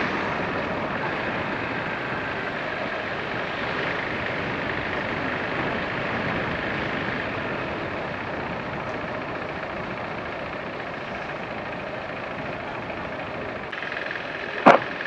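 Motorcycle riding along a street, heard from the rider's seat: a steady rush of wind and road noise with the engine running underneath, easing off slightly over the seconds.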